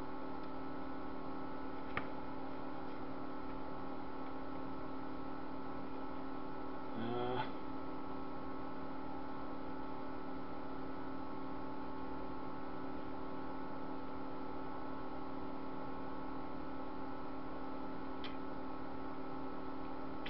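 Steady electrical hum made of several fixed tones, with a man's short murmur about seven seconds in and a faint click about two seconds in and another near the end.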